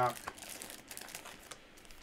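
Crinkling and rustling of foil-wrapped Weiss Schwarz booster packs and their cardboard display box as the packs are pulled out of the box, with a few small clicks, dying away near the end.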